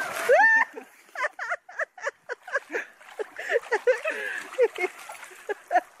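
Excited voices with short cries and chatter, a rising exclamation at the start. Water splashes faintly in an inflatable paddling pool around the middle.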